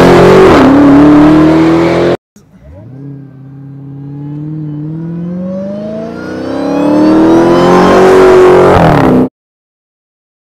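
Supercharged Hemi V8 of a Dodge Challenger SRT Hellcat Redeye Widebody running loud under throttle, cutting off suddenly about two seconds in. After a short gap a second run starts faint and grows loud as the engine note climbs in pitch under acceleration, then stops abruptly near the end.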